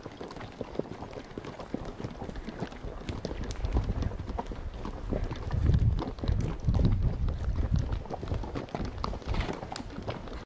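Horses walking on a dirt trail, their hoofbeats a loose, steady clip-clop. A low rumble on the microphone joins in from about three and a half seconds in and fades out near eight seconds.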